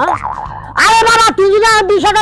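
A high-pitched voice calling out, drawn out for about a second, over a background music bed.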